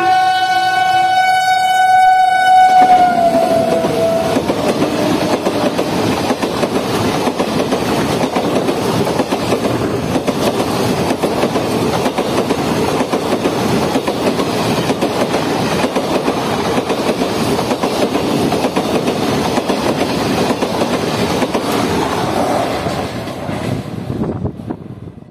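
The horn of a WAP-7 electric locomotive sounds for about three seconds as the express closes in, and its pitch drops as the engine passes. The coaches then run by at speed in a long, steady roar of wheels on rail that fades just before the end.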